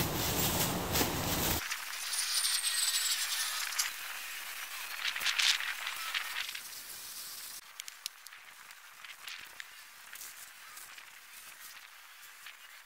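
Dry straw rustling and swishing as it is pulled apart and scattered by hand. About halfway through it gives way to quiet outdoor ambience with a few faint ticks.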